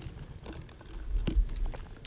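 A few faint small clicks and rustles from handling wires and a soldering iron over a neoprene mat, with a low room rumble.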